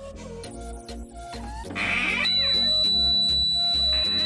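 A small piezo electronic buzzer, powered by a 9 V battery, switches on about two seconds in and holds one steady high-pitched tone. It is the door alarm going off: opening the door has let the foil contacts of the clothes-peg switch touch. Background music plays throughout.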